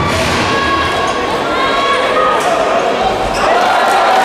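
A handball bouncing on a sports-hall court during play, over the steady voices and shouts of spectators.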